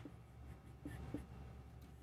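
Dry-erase marker squeaking and scratching on a whiteboard as lines are drawn, with two short squeaks about a second in. A steady low room hum runs underneath.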